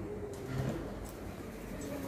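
A bird calling faintly.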